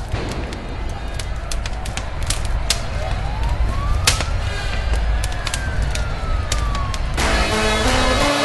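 A siren-like wail, one slow rise and fall in pitch, over a deep steady rumble with scattered sharp clicks. Music kicks in near the end.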